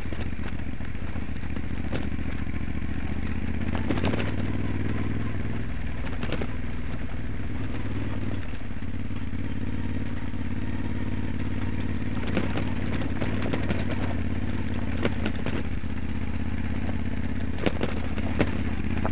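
Moto Guzzi Stelvio NTX's transverse V-twin engine pulling steadily on a loose gravel track. Stones and the bike clatter and crackle over the ruts now and then, loudest about four seconds in and near the end.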